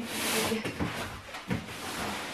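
Cardboard box full of books being handled and its lid flipped open: a scraping rustle of cardboard, then a single knock about a second and a half in.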